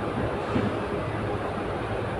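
Steady background noise in a pause between words: an even hiss with a low hum beneath it.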